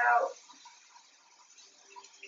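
A spoken word, then near-quiet kitchen room tone with a faint steady hiss.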